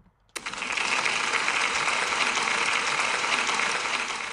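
Crowd applause, likely a pasted-in recording: a dense, even clapping that starts suddenly about a third of a second in and holds at one level.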